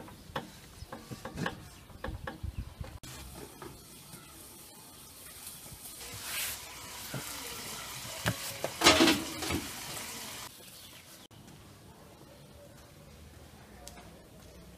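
Kitchen handling sounds: light knocks and rubbing as a cloth wipes a large aluminium pot lid, then a wooden rolling pin working thin dough on a wooden board, with a cluster of louder knocks about nine seconds in.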